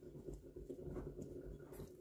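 Faint, soft rustling as a raw chicken breast is pressed and turned in a plate of flour, with a few light ticks.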